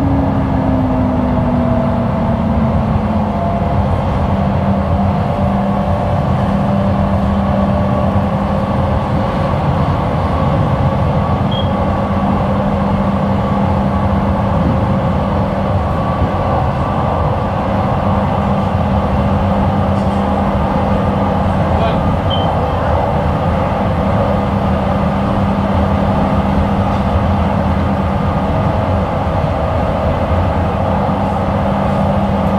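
A Jabodebek LRT train running at speed on its elevated track, heard from inside the car: a steady rumble of wheels on rail with an electric motor hum. The hum dips slightly in pitch over the first few seconds, then holds level as the train cruises.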